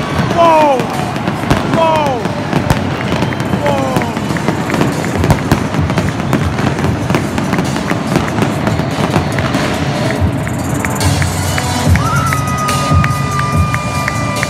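A large stadium crowd's noise with a run of sharp cracks and bangs from pyrotechnic flame jets and fireworks. Falling whistle-like glides sound in the first few seconds, and a steady high tone comes in near the end.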